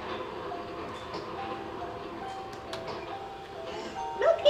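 A faint, simple electronic Christmas tune from a musical Christmas village display, played one note at a time like a music box.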